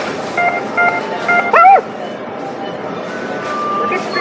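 Aeon Bank ATM sounding short electronic beeps as its touch-screen buttons are pressed. About one and a half seconds in comes a short, loud electronic tone that rises and then falls in pitch, the loudest sound here. A steady tone sounds near the end.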